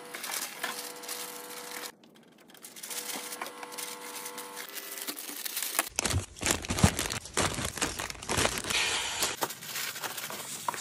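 Paper packaging rustling and crinkling as orders are handled, in several short segments, with heavier handling noise in the second half. A steady hum sounds twice in the first half.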